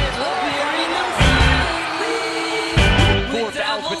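Basketball game sound from a highlight clip: a ball bouncing on the court and voices, laid under rock music whose bass drops out, coming back in two short bursts.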